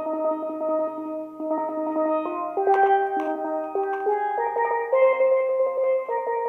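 Solo steel pan played with sticks: a melody of held notes, each sustained by rapid repeated strokes (rolls).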